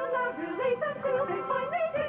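Cartoon theme song: a sung vocal line that glides and steps up and down in pitch over backing music with held chords.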